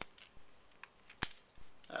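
A few small clicks and ticks of fingers and metal as the flint-spring screw is threaded back into a Zippo lighter's insert by hand, with one sharp click a little past a second in.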